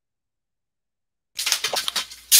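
Silence, then about a second and a half in a quick run of clattering knocks: small household objects knocked over by a cat, falling and rattling.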